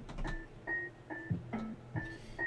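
Quiet background music made of short plucked-string notes, repeating about twice a second.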